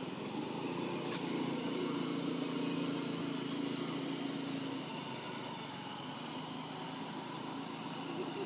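A small engine humming steadily in the background under a constant hiss. The hum is strongest in the first half and fades after about five seconds.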